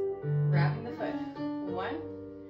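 Piano music playing a slow phrase with held low notes, the accompaniment for a ballet exercise.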